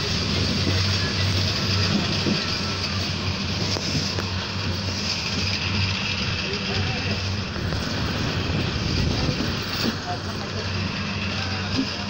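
Steady running noise of a moving passenger train, heard from inside the carriage through an open window, with a constant low hum under it.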